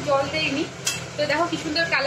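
A long steel spatula stirring and scraping shredded cabbage as it fries in a kadai, with one sharp clink about a second in. A voice sounds alongside.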